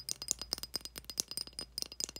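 A small tin toy teacup with a metal handle rattling and clicking rapidly as it is handled up close, with many quick irregular clicks, each carrying a faint high metallic ring.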